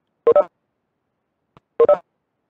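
Two identical short electronic tones, each a quick double beep of a few mixed pitches, about a second and a half apart.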